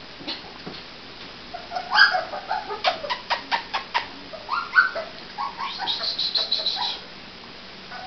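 Puppy whimpering in short high squeaks and squeals as it scrambles out of its straw bed. A quick run of clicks about three seconds in comes from its claws on the tile floor.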